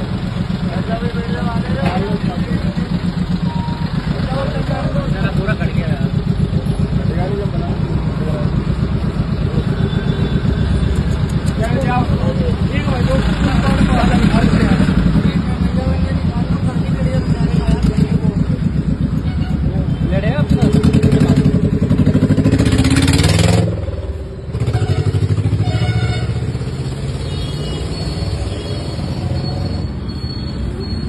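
A vehicle engine running steadily at idle, with several people talking over it in busy street traffic. A short loud rush of noise comes about three-quarters of the way through, followed by a brief dip.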